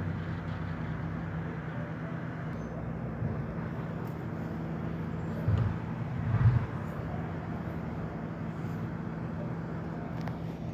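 Garbage truck engine running steadily, a low even hum, with two short low thumps a second apart in the middle.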